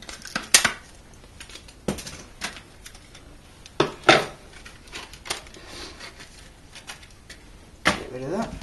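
Scissors snipping the hard plastic case of an SD memory card, with the plastic being handled: a scatter of sharp clicks and snaps, loudest about half a second in and again about four seconds in.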